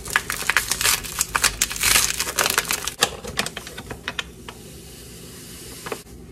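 Paper sugar bag being opened and handled, with dense crinkling and crackling for about three seconds, then a soft steady hiss of granulated sugar pouring into a glass jar near the end.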